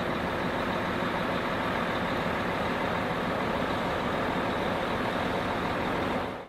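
MAN concrete mixer truck's diesel engine running steadily.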